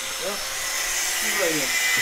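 A steady high-pitched hiss that grows slightly louder, with faint voices talking in the background.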